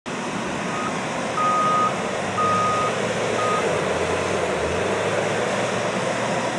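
Caterpillar wheel loader's diesel engine running, with its reversing alarm beeping four times, about once a second, before falling silent about three and a half seconds in.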